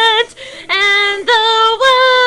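A woman singing: a long held note ends just after the start, and after a brief breath she sings a run of short notes, the last sliding upward.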